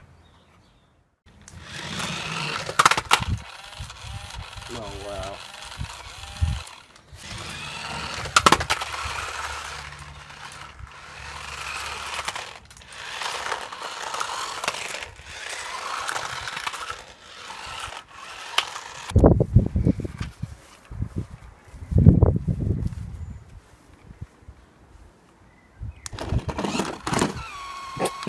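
Toy RC car's small electric motor whirring as it drives and jumps, with a few sharp knocks and some heavy low thumps.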